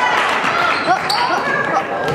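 Basketball game sounds in an echoing gym: a ball dribbled on the hardwood floor, with short squeaks and calling voices from players and spectators.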